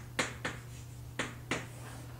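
Chalk writing on a blackboard: four short, sharp taps of the chalk striking the board as strokes are made.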